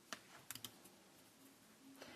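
Near silence broken by faint computer clicks: one just after the start, then three quick clicks about half a second in, as the slideshow is advanced to the next slide.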